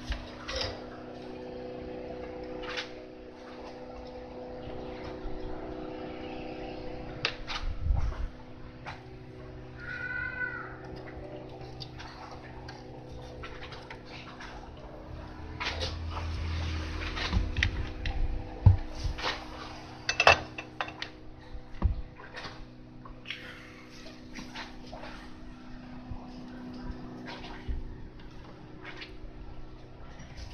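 Scattered clicks, taps and knocks of hands handling a test light bulb and its wires on a workbench, over a faint steady hum. A short pitched call sounds once about ten seconds in.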